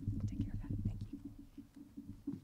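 Quiet, muffled talk between two women near a lectern microphone, heard mostly as low, indistinct murmur rather than clear words.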